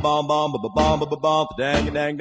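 Doo-wop vocal group music: several voices singing sustained, wordless close-harmony chords that step from note to note, over a pulsing bass line.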